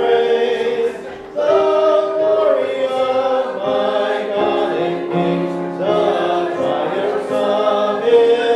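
Choir singing a slow piece in held notes, with a short drop in level about a second in before the voices come back in.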